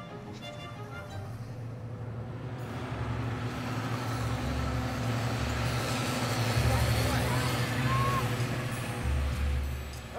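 Tractor pulling a Major LGP 2400 vacuum slurry tanker that sprays slurry from its rear splash plate: a rushing spray that builds over the first few seconds and then stays loud, over the engine's low steady drone.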